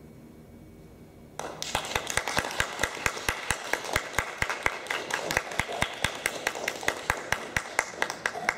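Small audience applauding, starting about a second and a half in after a short hush, with one loud nearby pair of hands clapping steadily at about five claps a second.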